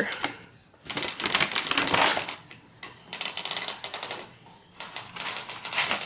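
Ratchet and pawl (ratchet dogs) on the back beam of a Schacht Cricket rigid-heddle loom clicking rapidly as the beam is turned to wind the warp on around paper, in a few runs of fast clicks.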